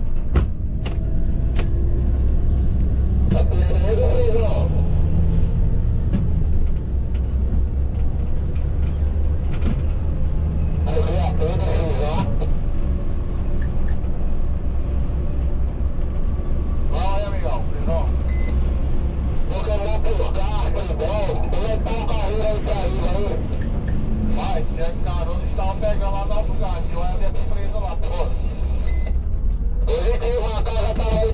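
Cab running noise of a Volvo B9R coach on the highway: a steady low engine and road rumble. Voices speak at intervals over it.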